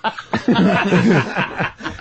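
Several people laughing at once in a studio, breaking out about a third of a second in after a brief hush.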